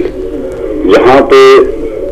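Speech only: a man talking, pausing briefly and then drawing out one word.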